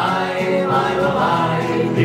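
Live folk group singing a Czech tramp song in multi-part vocal harmony, with long held notes, over acoustic guitars.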